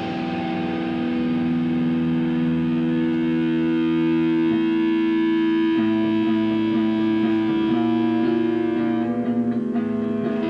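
Distorted electric guitars ringing out long sustained chords, without drums, shifting to a new chord about halfway through as a lower note comes in.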